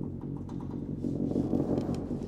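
Symphony orchestra with solo tuba holding a low chord, swelling slightly about halfway through.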